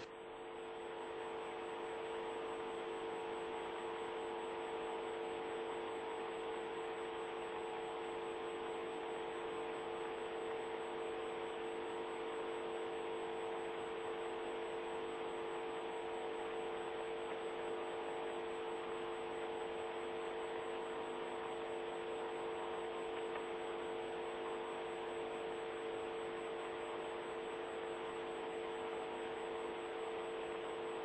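A steady hum made of several fixed tones over a hiss. It swells in over the first couple of seconds, then holds level without change.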